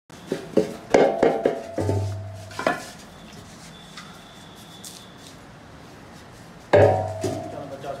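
Aluminium milk can clanking as it and its lid are handled: a run of sharp metallic knocks with ringing over the first three seconds, then one loud clank near the end.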